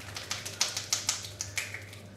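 Rapid percussive massage: open hands slapping and chopping on a bare arm, about seven sharp smacks a second, loudest around the middle.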